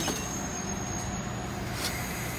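Passenger train rolling slowly into the station to stop: a steady low rumble and hum, with a thin high whine that fades out about halfway through.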